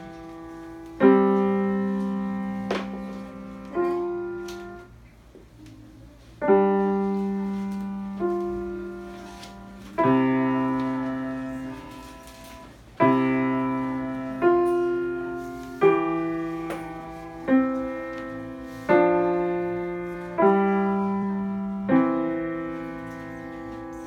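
Grand piano played slowly by a young beginner: simple notes and chords struck one at a time, each left to ring and fade before the next. There is a short pause about five seconds in.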